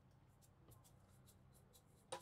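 Near silence: faint background hum with a run of faint, quick, evenly spaced high ticks.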